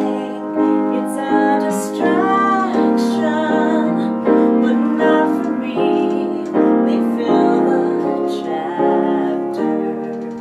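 A woman singing a slow ballad over piano chords and acoustic guitar, her held notes wavering with vibrato. The chords are restruck about every three-quarters of a second.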